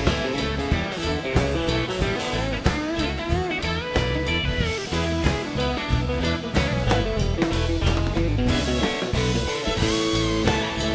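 Live country-rock band in an instrumental break, with no singing: electric and acoustic guitars, fiddle, bass and a drum kit keeping a steady beat, with bending lead lines over the top.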